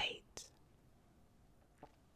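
A woman's soft speaking voice trailing off right at the start, then near silence broken by two faint short clicks.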